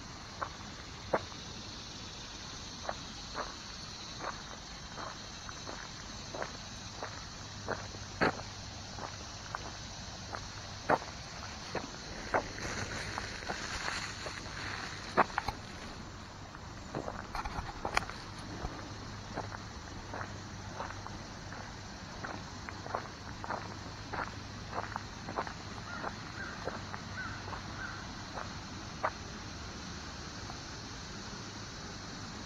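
Footsteps on a dirt and gravel woodland path, irregular steps about one or two a second, over a steady high drone of insects.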